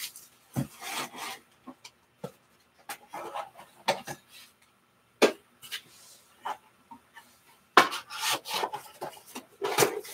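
Trading cards being handled and sorted on a table: cards sliding and rubbing against each other, broken by irregular sharp taps as cards and card cases are set down, the loudest about halfway through and near the end.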